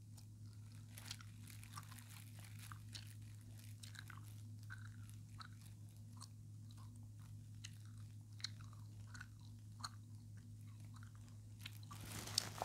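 Faint, scattered soft clicks and scrapes close to the microphone, over a steady low electrical hum.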